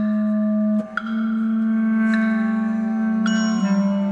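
Contemporary chamber ensemble of bass clarinet, horn, percussion and double bass playing a slow passage. Low wind notes are held and shift to a new note about a second in and again near the end, while three struck, ringing percussion notes sound over them.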